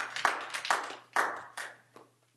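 Brief scattered clapping from a few people in the audience, in several quick bursts that die away within about two seconds.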